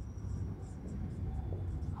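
Marker pen scratching on a whiteboard as a word is written, with a brief thin squeak in the first half second, over a steady low hum.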